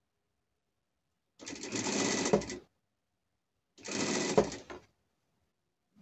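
Industrial straight-stitch sewing machine running in two short stitching bursts of about a second each, starting and stopping abruptly, as it sews short seams through layered fabric.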